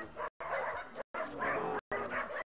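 A man's voice speaking, chopped by repeated brief audio dropouts, with the sound cutting out completely about every half second.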